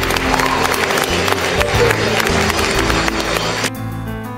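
Audience applauding over music. The applause cuts off abruptly shortly before the end, leaving only the music.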